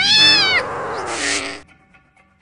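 A high-pitched, meow-like animal cry that rises and then falls over about half a second, followed by a lower, raspier cry with a hiss that cuts off suddenly about a second and a half in.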